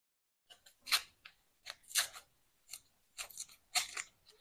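Kitchen knife cutting through a peeled onion held in the hand: an irregular series of short, crisp cuts, starting about half a second in.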